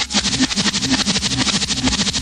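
Rock band recording: the music changes abruptly at the start into a fast, dense rhythmic passage with low notes beneath.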